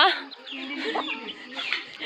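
Chickens clucking quietly.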